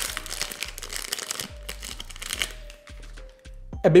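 Plastic wrapper of a chocolate-coated pão de mel being torn open and crinkled by hand, a dry rustling crackle in the first two and a half seconds. Soft background music with a few held notes.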